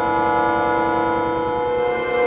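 Computer-generated granular synthesis from the netMUSE sound environment: a sustained drone chord of many steady tones over a rapid, flickering stream of grains in the low end.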